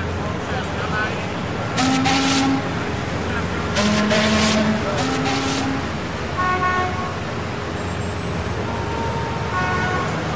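Car horns honking over a steady low traffic rumble: three loud honks in the first six seconds, then fainter, higher toots.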